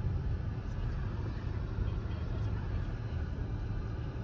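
A car's cabin noise while driving: a steady low rumble of the tyres on the road and the running gear, heard from inside the car.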